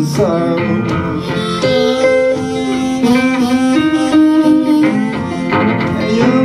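Solo acoustic blues played on an acoustic guitar, with long held notes that bend in pitch.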